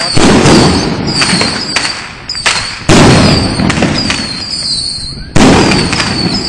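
Ground fireworks and firecrackers going off on pavement. Three loud bursts of dense crackling come about two and a half seconds apart, each dying away, with sharp single pops and short high falling whistles in between.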